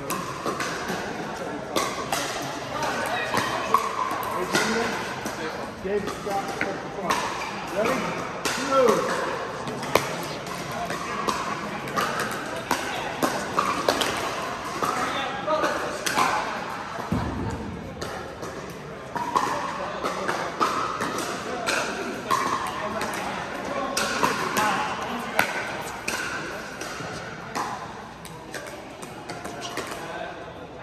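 Pickleball paddles hitting plastic balls: many sharp pops at irregular spacing from play across several courts in a large indoor hall, over a background of voices.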